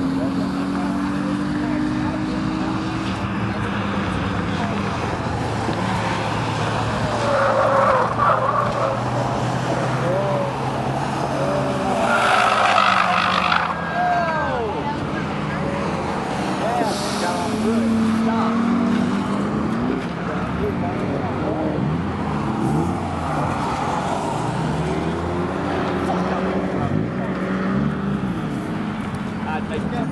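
Cars lapping a race track, their engines revving up and falling away through the gears as they pass, with the loudest pass about twelve seconds in.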